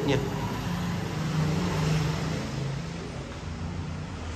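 A road vehicle passing outside: a steady engine hum with road noise that swells to a peak about halfway through and then fades.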